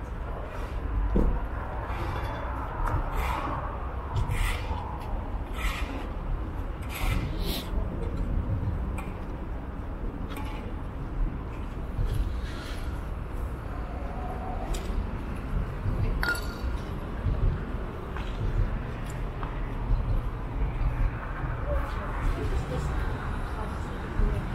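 Outdoor city ambience: a steady low rumble of traffic, with indistinct voices now and then and scattered light clicks.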